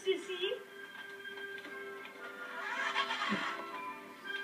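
A toy radio-controlled monster truck's electric motor whirs up and back down about three seconds in. It is heard through a TV speaker, over steady held tones.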